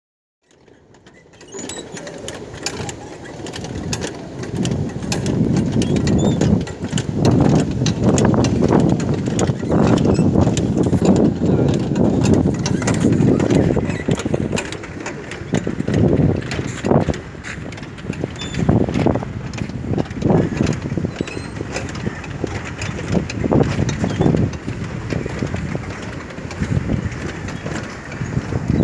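Cottonseed oil mill machinery running, with frequent short clicks and clanks over an uneven rumble, mixed with people talking.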